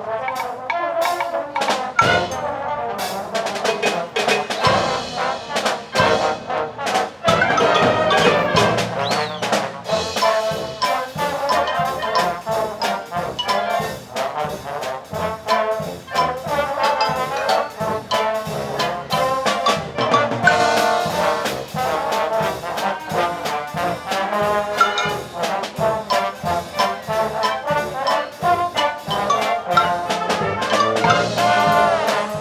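Concert band playing a ragtime trombone feature, the trombone section carrying the tune over the rest of the brass, woodwinds and a steady percussion beat.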